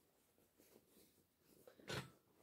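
Near silence, with faint rustling of cotton fabric being unfolded and held up, and one brief, louder rustle-like sound near the end.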